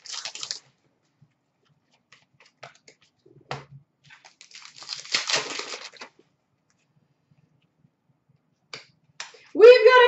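Trading cards being handled and flipped through by hand: brief papery swishes of cards sliding against each other and a few light clicks and taps, with quiet gaps between.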